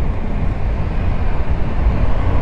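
Wind rushing over the microphone of a moving motorcycle, with a low rumble from the bike and the road, at a steady riding speed.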